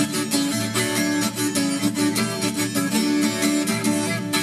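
Instrumental break in a sertanejo song: plucked acoustic guitar playing quick, evenly repeated notes over held accompanying notes, with no singing.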